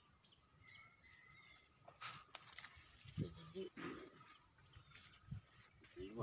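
Near silence: quiet rural outdoor ambience with faint bird calls and a few soft clicks.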